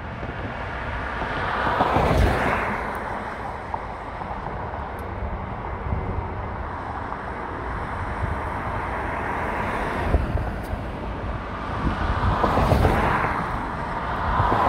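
Traffic noise on a multi-lane city boulevard: steady road and tyre noise, with a vehicle passing close by about two seconds in and another near the end.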